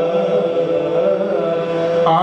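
A man's voice singing a naat (Urdu devotional poem in praise of the Prophet) into a microphone, holding one long drawn-out note that wavers slightly in pitch.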